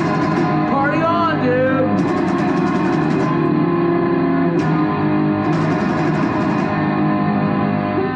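Loud rock jam on an electric guitar, played steadily throughout, with a wavering high wail about a second in.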